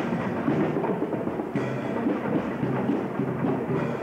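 Marching band playing with drums, steady throughout, heard muddy and rumbling through a home camcorder's microphone.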